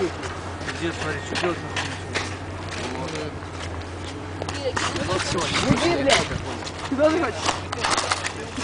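Indistinct voices of several young men calling out, with scattered sharp clicks and knocks over a steady low hum.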